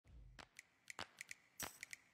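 A quick, irregular run of faint clicks and ticks, roughly nine in two seconds, with a louder, hissier burst a little after one and a half seconds in.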